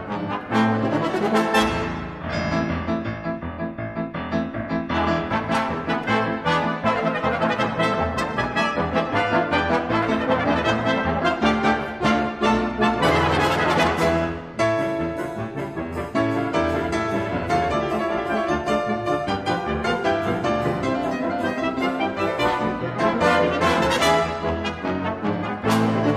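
Ten-piece brass ensemble playing with piano and percussion, a rhythmic, multi-voiced passage with a brief break about halfway through.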